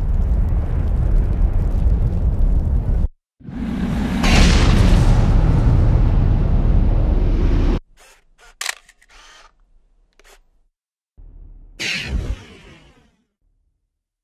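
Cinematic title sound effects: a deep rumbling boom that cuts off suddenly about three seconds in, a second longer rumble with a whoosh, then a few short clicks and a last whoosh near the end.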